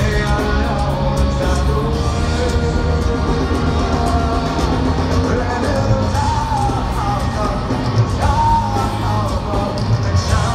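Live rock band performing: acoustic and electric guitars, bass and drums, with a singer holding long sung notes in the second half, recorded from the audience.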